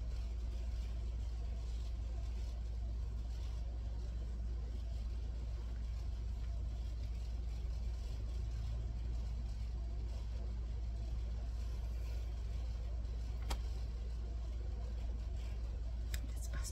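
A steady low hum, unchanging, with a single sharp click near the end.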